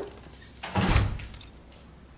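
A front door pulled shut: a metallic rattle of the handle and latch with one heavy thud about a second in.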